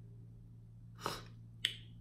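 A short, soft breathy laugh about halfway through, followed by one sharp click.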